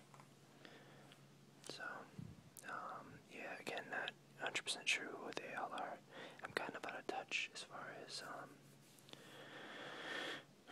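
Whispered speech, with faint clicks and light rustles of hands on glossy magazine pages.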